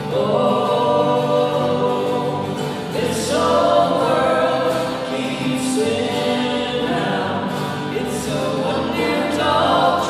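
Live folk trio: several voices singing in harmony over strummed acoustic guitars and an electric guitar, with the long reverberation of a stone building.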